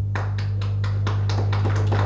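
Hand clapping from a small audience, about six or seven claps a second at a steady pace, over a steady low electrical hum.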